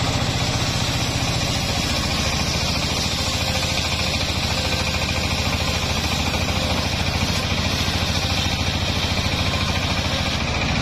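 Stationary single-cylinder diesel engine running steadily with an even, rapid pulse, driving a circular saw blade that rips through dry jackfruit wood with a constant rasping hiss over the engine.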